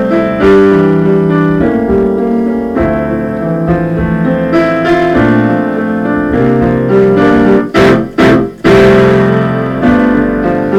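Yamaha grand piano playing a slow run of sustained chords, the chords changing about every second. The sound briefly drops out twice a little before the end.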